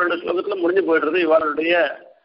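Only speech: a man's voice talking continuously, breaking off at the very end.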